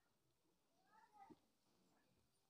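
Near silence, with one faint, brief high-pitched cry about a second in.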